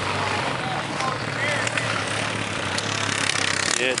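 Snowmobile engines running nearby, a steady low drone under an even rushing noise, with faint voices in the background.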